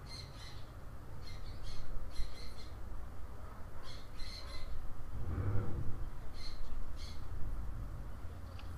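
A bird squawking in short, shrill calls in clusters of two or three, repeating every second or two, over a low steady hum.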